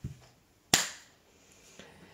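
A single sharp click about three quarters of a second in, just after a soft low thump at the very start.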